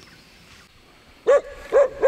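A dog barking: two short barks about half a second apart near the end, over faint background noise.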